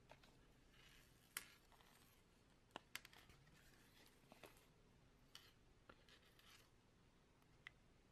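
Near silence with faint handling sounds: soft rustles and a handful of small, sharp clicks as monofilament line and a rig with plastic booms and clips are wound onto a foam rig winder.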